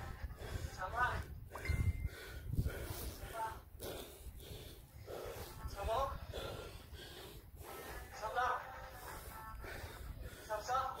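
A person's faint voice and hard breathing: short voiced sounds come about every two to three seconds, with breathing noise between them.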